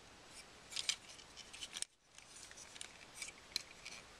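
Faint clicks and scrapes of plastic parts on a Transformers Battle Blades Optimus Prime toy figure being flipped and snapped into place by hand during its transformation. A handful of short clicks, with the sharpest ones just before two seconds in and about three and a half seconds in.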